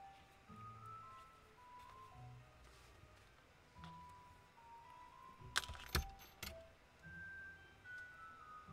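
Soft background music: a slow melody of held notes over a quiet bass line. A little past halfway, a quick cluster of sharp clicks and a knock, small objects handled on a tabletop.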